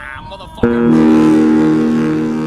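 Intro music ending on a single guitar chord, struck about half a second in and left ringing as it slowly fades.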